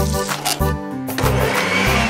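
Upbeat background music with a steady beat. About a second in, a cartoon electric blender sound effect starts running over it.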